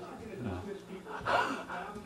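Brief, indistinct human voice sounds, a short low vocal sound about half a second in and a louder one a little past the middle, with no clear words.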